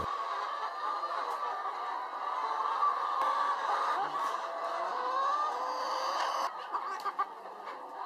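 A crowded flock of laying hens clucking and chattering all at once, many calls overlapping into a continuous murmur. It thins out about six and a half seconds in.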